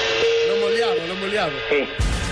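A steady single-pitch telephone ringing tone on a call line, fading about a second and a half in, with a low voice under it. The call is answered with a spoken 'Sì' near the end.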